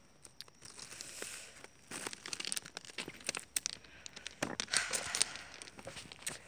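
Irregular rustling, crackling and crunching close to the microphone: handling noise of a hand-held phone being moved about while walking along a gravel railway track.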